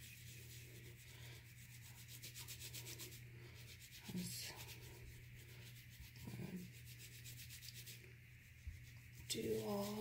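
Faint, fast, even scratchy strokes of an oiled makeup brush's bristles being scrubbed against a textured silicone cleaning mat, worked dry without water, over a steady low hum.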